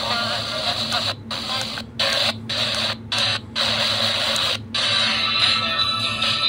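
Prunus J-125 pocket AM/FM radio's small speaker hissing with FM static as it is tuned up the band step by step, the sound cutting out briefly at each of about six tuning steps. Faint station audio starts to come through near the end.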